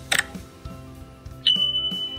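Subscribe-animation sound effects over soft background music: a single mouse-style click just after the start, then a sudden high, steady beep-like notification tone about a second and a half in.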